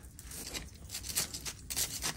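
Hand-weeding a gravel path: a small hand weeding tool scraping through the gravel and weeds being torn out, a series of short scraping strokes that come closer together in the second half.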